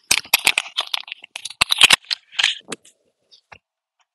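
Rapid clicking and clattering of a laptop keyboard being typed on, which stops a little under three seconds in, followed by a couple of faint clicks.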